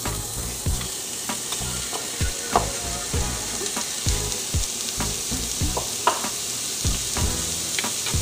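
Chopped red onion sizzling in hot olive oil in a nonstick frying pan. A wooden spatula stirs it, scraping and knocking against the pan at irregular moments.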